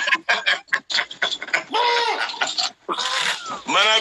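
A man laughing hard: a quick run of short, breathy bursts over the first second, then longer drawn-out voiced laughs.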